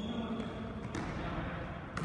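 Basketball game in a gymnasium: a short high squeak of a sneaker on the court floor at the start, then the ball thudding about a second in and again near the end, echoing in the hall.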